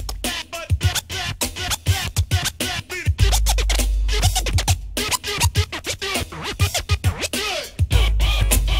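Instrumental break of a late-1980s Miami bass hip hop track: turntable scratching, heard as many quick pitch sweeps, over a drum-machine beat. A long deep bass note sounds from about three seconds in.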